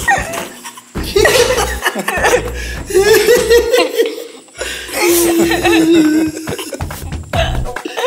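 Several people laughing and chuckling in short bursts over background music.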